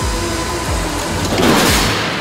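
Electronic background music with deep falling bass notes. Near the end a loud rushing crash noise swells and cuts off as a sedan, towed at 35 mph, runs into the rear of a box trailer.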